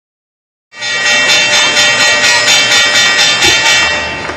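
Podcast intro jingle: a loud, dense sustained chord with a fast pulse of about five beats a second, starting suddenly under a second in and beginning to fade near the end.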